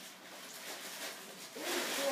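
Plastic packing wrap rustling and crinkling as it is pulled out of a foam shipping box, growing louder near the end.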